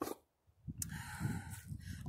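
A short breathy snort about a second in, over a low rumble.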